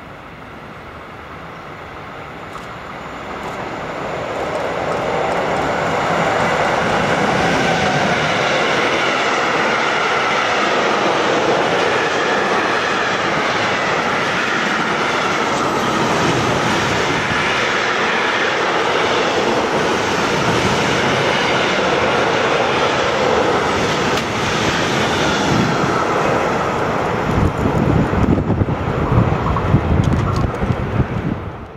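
Freight train of tank-container and container wagons passing close by on the rails. It grows louder over the first few seconds as it approaches, then runs on as a steady rumble and rattle of wheels on track with a wavering whine over it, turning to uneven, louder low rumbling near the end.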